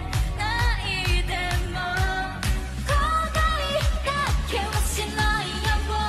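Upbeat pop song with female lead vocals singing over a steady drum beat.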